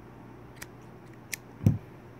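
Scissors snipping through yarn: two short sharp clicks about half a second and just over a second in, then a louder dull knock near the end.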